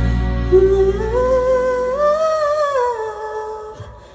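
Female vocalist singing a slow, held phrase through a microphone and PA, over a low sustained band chord that fades out about two seconds in. The voice alone then rises, falls and stops shortly before the end.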